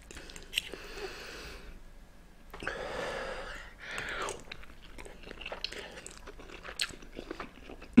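A person slurping instant noodles off a fork in a few soft drawn-in swells, then chewing them with small irregular wet clicks.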